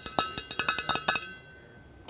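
A quick run of sharp clicks and taps, with a faint ringing under them, from wired earbuds being handled close to the microphone; it stops a little over a second in.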